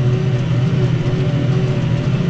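Tractor's diesel engine running steadily under load while pulling a plough, heard from inside the cab as an even, unbroken drone.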